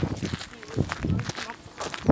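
Footsteps on a dirt path with the rustle and knock of a handheld phone brushing against denim clothing as it swings, and brief snatches of voices.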